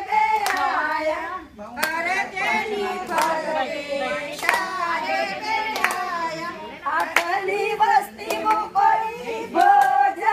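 A group of women singing together, with sharp hand claps through the song as they dance in a circle.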